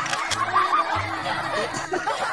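A man and a boy laughing together over background music.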